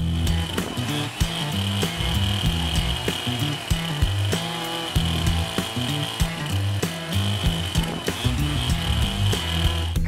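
Stihl chainsaw running and cutting through a pecan tree trunk, mixed with background music that has a steady beat.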